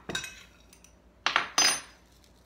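A metal spoon clinking against a glass mixing bowl: two sharp, ringing clinks about a second and a half in.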